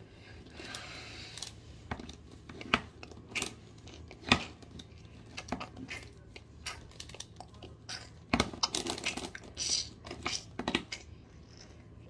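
Plastic Pyraminx Diamond twisty puzzle being turned by hand: a string of irregular clicks and clacks as its pieces are twisted, with louder clacks about four and eight seconds in.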